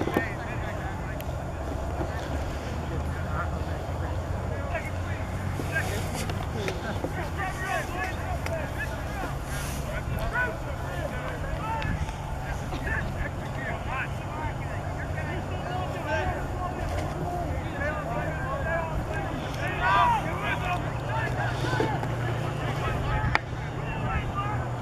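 Wind buffeting the microphone with a steady low rumble, under scattered distant shouts and calls from rugby players and spectators, with one louder shout about twenty seconds in.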